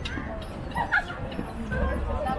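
A small dog gives a short bark or yip about a second in, over the chatter of passers-by.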